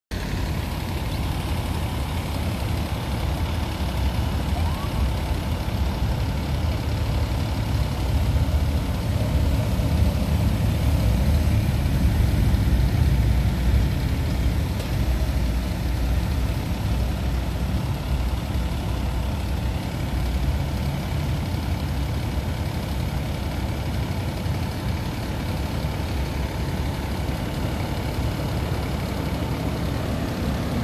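Low, steady rumble of road vehicle engines as a slow line of vehicles led by a fire engine approaches; it swells for a few seconds around the middle.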